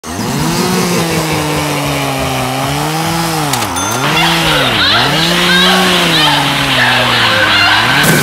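Chainsaw engine running at high revs, its pitch dipping and climbing back three times as the throttle is eased and opened again. A fainter, higher wavering sound joins about halfway through.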